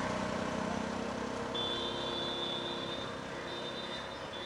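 Street traffic: a motor vehicle engine running steadily. A steady high-pitched whine joins about a second and a half in.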